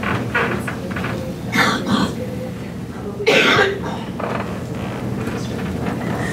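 A person coughing twice in a lecture hall, about a second and a half in and again, louder, about three seconds in, over a steady low hum.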